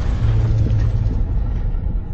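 Deep rumble of a logo-intro sound effect, the dying tail of a boom: a steady low drone stays while the brighter, hissy part fades away.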